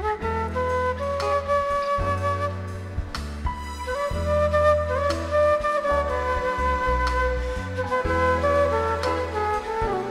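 Flute solo played live over a band's backing, with long held bass notes underneath. The flute plays a melodic line of sustained notes with a few slides between pitches.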